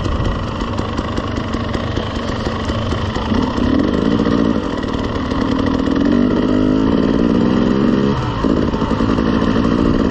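Dirt bike engine running under throttle on a trail ride, its note rising from about three and a half seconds in, dropping sharply around eight seconds, then picking up again.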